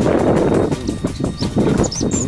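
Loud, jumbled scuffling noise from two African elephants sparring at close quarters, with birds chirping near the end.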